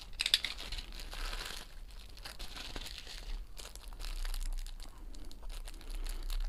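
Plastic postal bag and the clear plastic sleeve inside it crinkling and rustling as they are handled, with a louder stretch of rustling in the first second or so.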